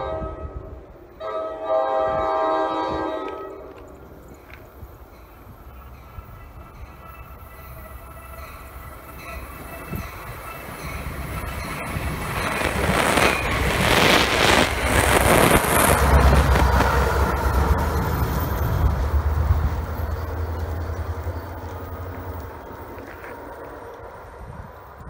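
NJ Transit push-pull train, cab car leading, blowing its horn: one blast breaks off about half a second in and another runs to about three seconds. The train then rumbles past on the rails, loudest about midway, followed by the low drone of the PL42AC diesel locomotive (16-cylinder EMD 710 engine) pushing at the rear, which fades near the end.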